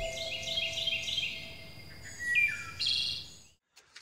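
Birdsong: short high chirps repeated about four a second, then a few lower, falling notes and a last high chirp, fading out near the end.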